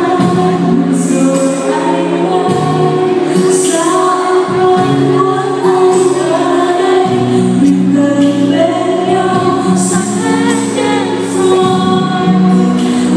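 A woman singing a Vietnamese pop song live into a handheld microphone, amplified over backing music.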